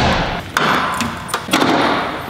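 Knocks and clunks with a rustling noise between them, from a Mazda RX-8's hood release being pulled and the hood being opened. There are three sharp knocks, at the start, about half a second in and about a second and a half in.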